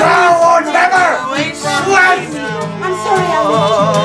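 Live singing over an acoustic guitar: voices sing a bending melody, then settle in the second half into a long held note with vibrato.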